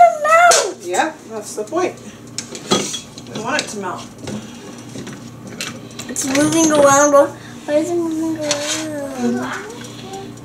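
A few light clinks and knocks as butter and a spoon touch a nonstick skillet on an electric stove, amid voices talking.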